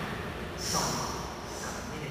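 A short, sharp breath close to the microphone about half a second in, over steady room noise.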